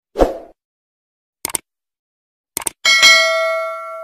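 Subscribe-button animation sound effects: a short pop, two pairs of quick clicks, then a bright bell ding that rings out for about a second and a half.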